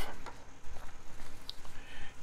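Faint handling noises: a fountain pen's cap is set down on a cutting mat and the pen is turned in the fingers, with a few soft ticks and one small high click about a second and a half in.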